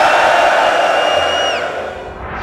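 Large indoor crowd cheering loudly, with a high whistle held over the roar that slides down and stops a little past halfway.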